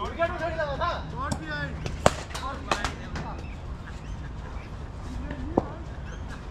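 Men's voices calling out during cricket net practice for about the first two seconds, then a single sharp knock, the loudest sound, followed by a few fainter clicks over a steady low rumble.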